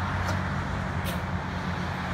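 A steady low mechanical hum under a noisy background rumble, with a couple of brief faint clicks.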